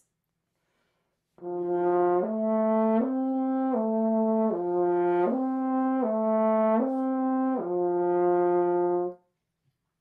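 French horn slurring a lip-slur exercise on the horn's natural arpeggio: a chain of smoothly connected notes stepping up and down, each under a second long, ending on a longer low note. It starts about a second and a half in and stops about a second before the end.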